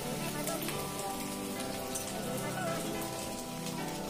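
Wet shredded bamboo shoot rustling and crackling as hands toss and squeeze it in a steel bowl, over steady background music.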